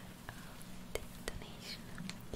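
A woman whispering close to the microphone, with scattered small clicks over a faint steady low hum.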